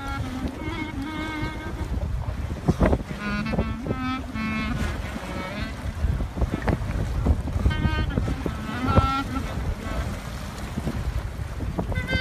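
Clarinet played in short phrases of held notes, outdoors with heavy wind rumble on the microphone and some water noise.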